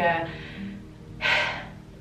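A woman's sharp in-breath about a second in, over soft background music, after her voice trails off at the start.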